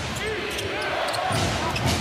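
Basketball arena game sound: steady crowd noise, short squeaks of sneakers on the hardwood court, and the thud of the ball.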